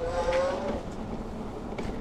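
Riding noise from an electric bike on a sidewalk: a steady low rumble of wind and tyres, with a short, slightly rising whine during the first second.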